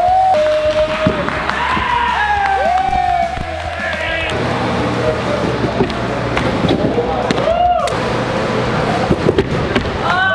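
Onlookers call out drawn-out, rising-and-falling exclamations as athletes flip off a trampoline, over scattered thuds of bounces and landings on the trampoline and mats. A steady low background sound runs underneath from about halfway through.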